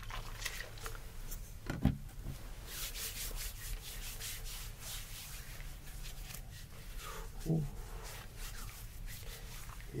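Hand sanitizer dispensed from a plastic bottle, then the hands rubbed together, a dense run of quick swishing strokes. A short thump comes about two seconds in.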